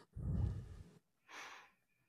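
A man's breathing in a pause between speakers: a short, low sigh-like breath out in the first second, then a soft breath about a second later.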